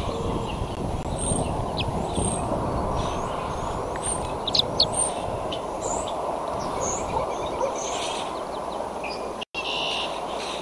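Short, high bird chirps and calls, the loudest about four to five seconds in, over a steady low rumble of outdoor background noise. The sound cuts out for an instant near the end.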